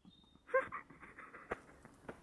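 A person's faint, short squeaky vocal noise about half a second in, followed by soft breathy sounds and a single click about halfway through.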